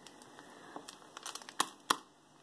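Jewelry being handled: a few light clicks and rustles, ending in two sharp clicks in the last half second.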